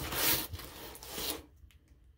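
Plastic-bagged comic books rubbing and sliding against each other as one is pulled out of a cardboard comic short box: a dry rustle for about a second and a half that fades out.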